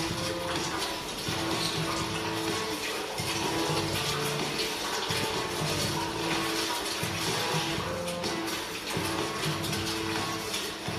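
Background music with sustained notes over a low bass line, played from a TV's speakers in the room.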